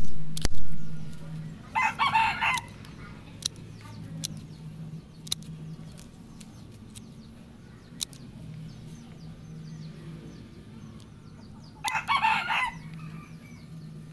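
Two sharp knocks at the very start, then scattered light clicks as pruning shears cut and the branches are handled. A chicken calls twice, once about two seconds in and once near the end, over a steady low hum.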